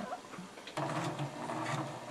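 Domestic sewing machine fitted with a twin needle starting up about three quarters of a second in and running steadily, stitching a straight-stitch hem in sweatshirt knit.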